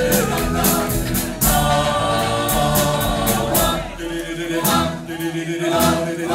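A live vocal group, several men with a woman among them, singing in close harmony over a band with electric guitar and drums, cymbal ticks keeping time. About four seconds in the bass and drums thin out for a moment, leaving the voices more exposed.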